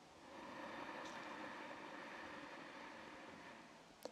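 A person's slow, deep inhale through the nose, a faint breathy hiss that swells about half a second in and tapers off over about three seconds. It is the inhale phase of a paced breathing exercise.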